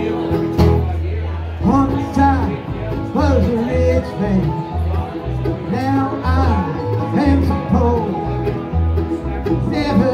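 Live acoustic bluegrass band playing: picked banjo, strummed acoustic guitar and mandolin, with a melody line riding over a steady low bass pulse, recorded on a phone.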